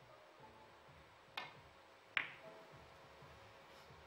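A three-cushion billiard shot heard as two clicks over a faint background. The first is the cue tip striking the cue ball about a second and a half in. The second, sharper and louder click, with a brief ring, comes a moment later as the cue ball hits an object ball.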